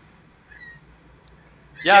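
Speech only: a quiet pause with faint background noise, then a voice says "yeah" near the end.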